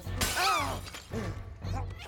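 Terracotta flower pots shattering, a bright crash of breaking clay about a quarter second in. Short cries that rise and fall in pitch repeat about twice a second around it.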